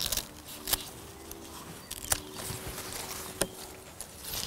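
Garden scissors snipping cordyline leaves: three sharp cuts, a little over a second apart. Under them runs a faint steady hum.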